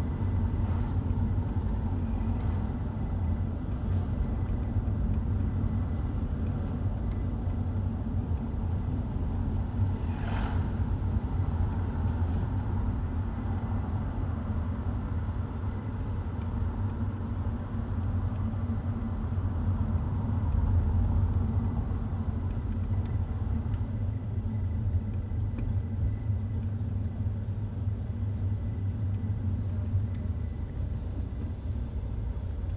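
Steady low rumble of a car's engine and tyres heard from inside the cabin while driving, with a brief hiss about ten seconds in.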